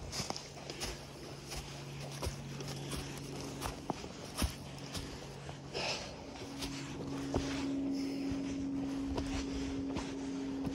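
Footsteps on dry fallen leaves and then on a dirt track, as an irregular series of short scuffs and steps. A steady low hum runs underneath and shifts to a higher tone about two-thirds of the way through.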